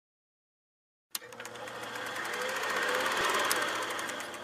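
Film projector sound effect: a rapid, even mechanical clatter that starts with a sharp click about a second in and grows slightly louder.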